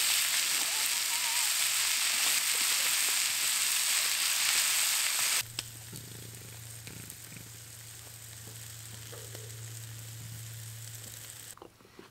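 Steaks searing in a cast iron skillet over a campfire, a loud, even sizzle that cuts off abruptly about five seconds in. After that it is much quieter: a steady low hum with a few faint crackles.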